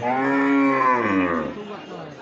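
A head of cattle mooing once: a single low call of about a second and a half that rises slightly in pitch and then falls away.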